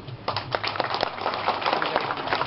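Audience applauding: many hands clapping irregularly, starting a moment in.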